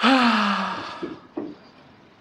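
A person's loud, breathy sigh: one voiced exhale falling in pitch, under a second long, followed by a couple of faint clicks.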